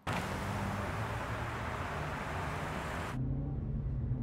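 A Maserati saloon driving on a road: a steady low engine hum under a loud rush of tyre and road noise. About three seconds in, the rush cuts off suddenly, leaving only the low engine hum as heard inside the cabin.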